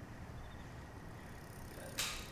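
Faint outdoor night ambience: a steady low rumble and hiss with a few faint, high chirps in threes about once a second. A high rising whoosh builds near the end.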